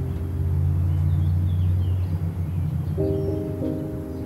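Muffled piano music, as if heard from another room, with chords struck again near the end. A low rumble of a passing vehicle swells and fades through the middle, with faint bird chirps above.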